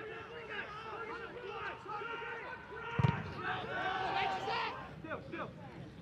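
Footballers' voices shouting and calling to one another across the pitch, many short overlapping calls with no crowd noise behind them, and a single sharp thump about three seconds in.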